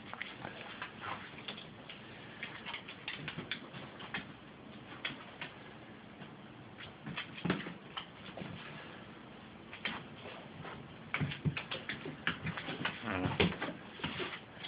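Scattered, irregular clicks and taps of dogs' claws on a hardwood floor as the dogs move about.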